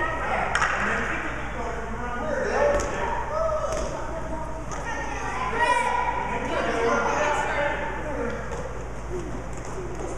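Indistinct, high-pitched voices of children and adults calling and chatting, echoing in a large gym, with a few sharp thuds.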